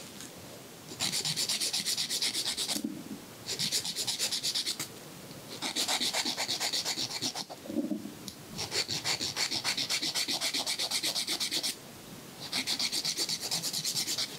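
A nail file being drawn quickly back and forth across a fingernail in a manicure, a dry rasping scrape of rapid strokes. It comes in five bursts of a second or more each, with short pauses between them.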